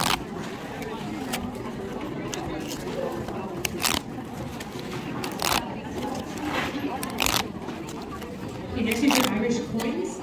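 Paper pull-tab tickets being torn open by hand: about five sharp snaps of the perforated tabs ripping, a second or two apart, over a murmur of voices.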